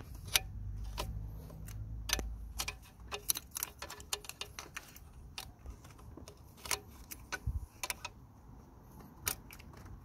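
Irregular sharp metallic clicks and clinks of a compression-tester hose fitting being pushed and worked onto the adapter threaded into a diesel engine's glow plug hole, with a low rumble over the first two or three seconds.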